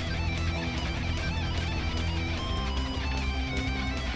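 Guitar solo in a pop song: a lead line wavering up and down in pitch over a steady backing track.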